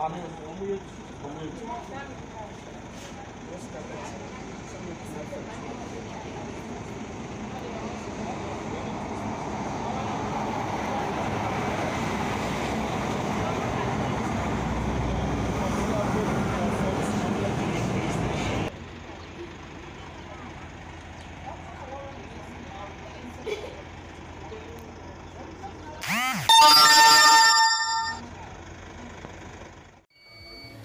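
Roadside vehicle noise: a rumble swells and holds for several seconds, then cuts off suddenly. A loud pitched blast of about two seconds comes near the end, over faint voices.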